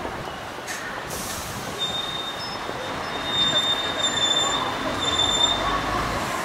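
Vehicle noise running steadily, with a high, steady squeal that starts about two seconds in and holds for about four seconds.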